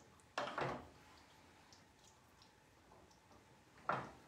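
Wooden spoon stirring chunky tomato-and-sausage sauce in a sauté pan: a short scrape about half a second in, then faint soft clicks and squishes from the stirring.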